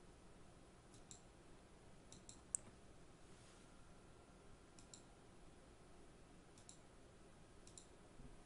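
Faint computer mouse clicks over near silence, about half a dozen, several in close pairs, the sharpest about two and a half seconds in.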